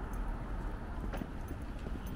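Footsteps on a paved street, a steady run of light taps over a low outdoor rumble.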